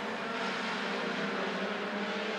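Engines of short-track stock cars racing around the oval, heard as a steady drone that holds its pitch.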